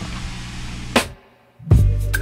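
A steady low hum inside the car cabin, cut off by a click about a second in, then a short silence. Near the end, background music with drums and a heavy bass line starts loud.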